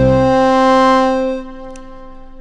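Preview of an Output Arcade 2.0 note kit playing a held, sampled chord. The chord changes right at the start, holds about a second, then drops away about a second and a half in, leaving a quieter ringing tail.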